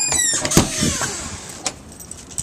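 A door being opened: a sharp latch click about half a second in, a rushing noise as it swings that fades away, and a fainter click later on.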